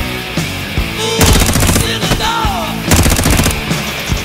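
Rock music with two short bursts of rapid automatic gunfire sound effects laid over it, one about a second in and another near three seconds.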